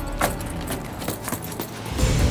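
Metal jangling and clattering, with a string of sharp, irregular clicks and knocks.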